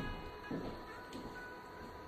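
A few faint recorded acoustic guitar notes played from an interactive touch-projection music wall, set off by touching the guitar picture, over a steady faint high whine.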